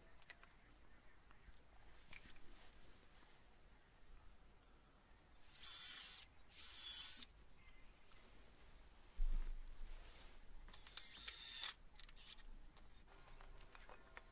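Faint handling of pallet-wood pieces on concrete: two short scraping hisses about six seconds in, a soft low thump a little after nine seconds, and another scrape around eleven seconds.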